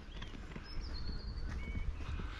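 Faint outdoor background: a few thin bird chirps, one longer falling one around the middle, over a low rumble of light wind on the microphone.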